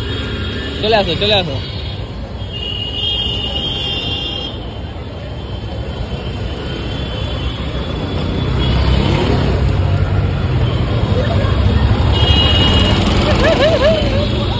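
Busy street traffic: the small engines of passing auto-rickshaws and motorbikes make a steady low rumble that grows louder in the second half as a vehicle passes close. Bits of voices come through over it, and a steady high tone sounds for about two seconds early on and again near the end.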